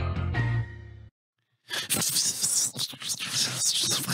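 A short musical jingle with a held low chord for about a second, then, after a brief gap, about two seconds of rustling, hissing noise standing in for a bush rustling.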